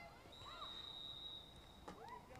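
Faint referee's whistle: one long, steady, high blast lasting about a second and a half, stopping play.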